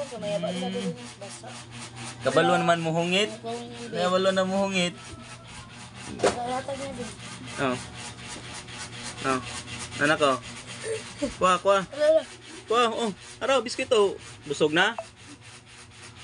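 Short wordless voice sounds, baby babbling and an adult humming, over a fast, even rubbing or scratching noise.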